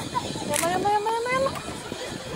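A child calling out in one long rising cry, with steady outdoor noise behind it.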